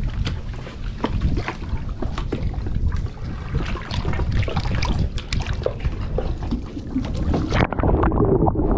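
Water sloshing and splashing at the surface right at the microphone, with a steady rumble and many small splashes as a snorkeler moves in the water. Near the end the microphone goes underwater and the sound turns suddenly dull and muffled.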